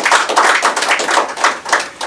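Audience applauding: many hands clapping in a dense patter, dying away near the end.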